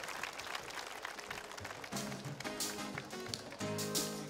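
Scattered applause and crowd noise from a concert audience, then about two seconds in a live band starts to play, with held chords.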